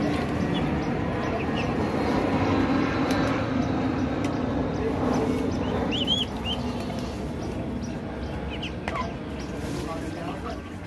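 Pigeons and ducklings feeding together, with short high peeps from the ducklings a few times, most of them around the middle and near the end, over a steady background murmur.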